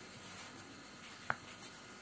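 Faint scratching of a pen or marker writing, with one short sharp tap a little past halfway.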